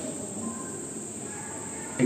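Room tone with a steady, high-pitched whine or chirr running without a break in the background.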